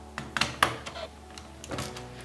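Plastic Lego bricks clicking and knocking as a built assembly is pressed down onto a Lego baseplate. There are several sharp clicks, the loudest a little over half a second in, and another pair near the end.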